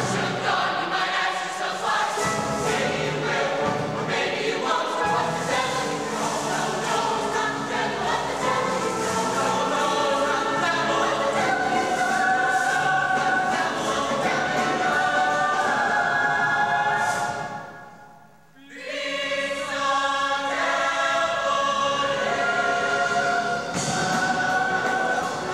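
High-school show choir singing a number, many voices together. About three-quarters of the way through the voices cut off sharply for a brief pause, then come back in.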